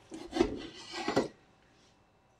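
Kitchen knife slicing thin-sliced pork on a wooden cutting board: a few sawing strokes with the blade knocking on the board, then the sound cuts off abruptly after about a second and a half.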